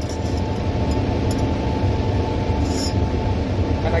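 Steady hum of a laminar airflow cabinet's blower fan, a low rumble with a faint constant whine above it.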